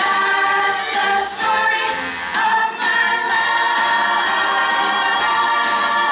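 Ensemble cast of a stage musical singing together in chorus with musical accompaniment. About halfway through, the voices settle into long held notes.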